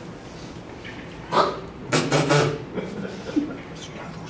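A man's voice making two short wordless vocal sounds, a brief one about a second and a half in and a longer one at about two seconds.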